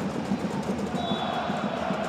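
Steady crowd noise from a football stadium's stands.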